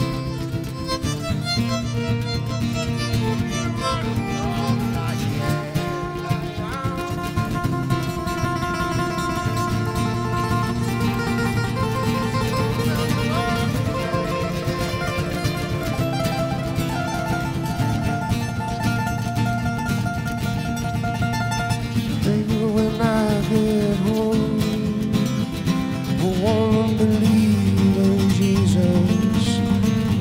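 Two acoustic guitars playing an instrumental passage together, one holding a steady rhythm under the other's picked lead line. The playing grows louder and busier in the last eight seconds.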